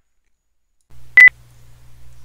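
A short, loud electronic beep at one high pitch about a second in, over a low steady hum that starts just before it.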